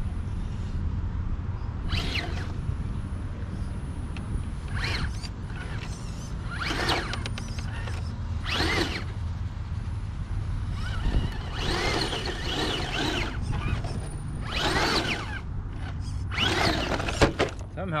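RC rock crawler's electric motor and drivetrain whining in repeated short bursts of throttle as it claws up a steep rock face, the pitch rising and falling with each burst. Near the end there is a sharp knock as the truck tumbles over onto its roof.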